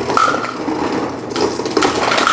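Refrigerator door ice dispenser running, ice cubes clattering down the chute into a cup as a dense run of small knocks, with a faint thin whine that comes and goes twice.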